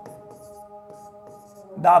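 Soft, short scratches of a pen writing on an interactive smart-board screen, over a faint steady drone of several held tones. A man's voice comes in near the end.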